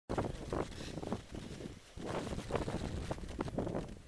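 Wind buffeting a helmet-mounted camera's microphone as the snowboarder rides through deep powder, in uneven rumbling gusts with brief rushing swells, likely including the board hissing through the snow.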